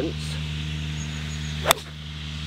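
Srixon ZX5 4-iron striking a golf ball: one sharp, crisp impact about a second and a half in, a solidly struck shot.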